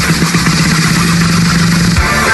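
Loud electronic dance music in a break: one low buzzing note held steady with a hiss above it and no drum beat, the beat coming back shortly after.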